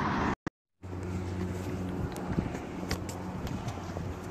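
Outdoor street sound with a steady low hum and a few scattered ticks and footsteps on paving, broken by a brief cut to silence about half a second in.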